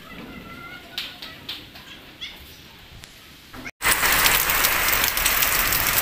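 Heavy rain of a sudden storm, a loud steady hiss, starting abruptly about four seconds in. Before it there is quieter outdoor ambience with a few short, faint chirps.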